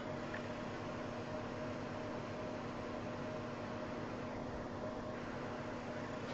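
Steady hiss with a faint, even low hum: room tone, with nothing changing through the moment.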